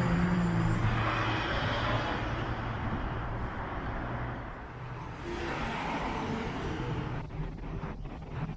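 Road traffic on a town street: cars driving past, their engine and tyre noise swelling and fading over a steady background hum.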